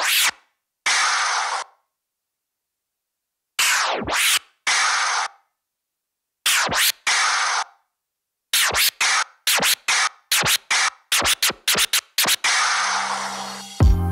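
Vinyl scratching of a sample through a Pioneer DJ DJM-S5 mixer, repeated march scratches: a back-and-forth baby scratch followed by a forward scratch, with the sample cut off by the crossfader and silent gaps between the phrases. From about eight seconds in, a fast run of short chopped cuts follows, ending in a longer played-out sound near the end.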